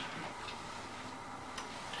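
A few faint, irregular clicks and light knocks from laptops being handled and lifted, over quiet room noise.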